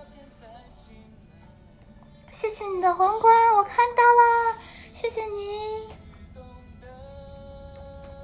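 A high-pitched voice singing, or squealing in held notes, in a few short phrases between about two and a half and six seconds, with a faint steady tone underneath.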